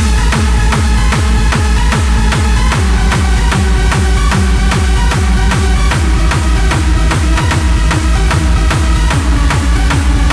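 Hardstyle dance music with a steady, fast kick drum that drops in pitch on every hit, under loud synth parts.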